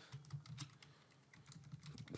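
Faint keystrokes on a computer keyboard: a few taps in the first half second and a few more near the end, with a quiet gap between.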